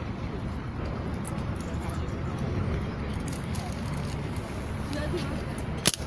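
Background chatter and steady outdoor noise, then a single sharp crack near the end: an air rifle firing a shot at balloons.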